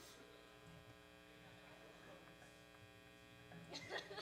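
Near silence, with a faint, steady electrical hum from the stage amplifiers and PA. A short louder noise comes just before the end.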